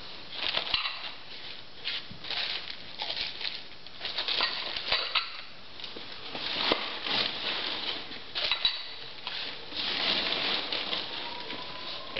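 Newsprint crinkling and rustling in irregular bursts as ceramic dishes are wrapped by hand, with a few sharp knocks of crockery.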